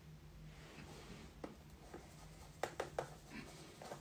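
Faint brushing and rustling from handling makeup brushes and products, with a small click and then three sharp little clicks in quick succession about two and a half seconds in.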